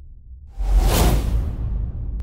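Cinematic logo-intro sound design: a loud whoosh sweeps in about half a second in and fades away, over a low rumbling drone.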